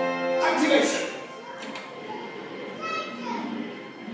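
Attraction show soundtrack of music and voices, loud for about the first second and then dropping to a quieter mix.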